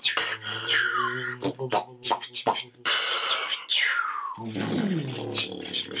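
Slow beatboxing: sharp mouth clicks and percussive vocal hits over a held low hummed bass note, with two falling vocal swoops.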